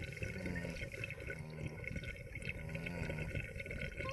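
Water in a bong bubbling steadily as someone takes a long hit from it.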